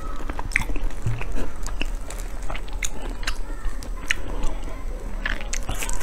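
Close-miked mouth sounds of eating soft chocolate mochi: sticky chewing and biting with many scattered short, sharp wet clicks and smacks.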